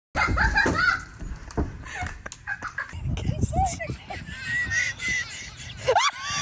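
Excited human voices: high-pitched cries and exclamations with no clear words.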